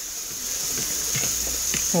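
Fork tossing shredded lettuce salad in a plastic bowl, with a few light clicks in the second half, over a steady high hiss.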